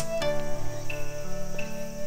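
Soft background music of sustained, held notes, moving to a new chord about halfway through.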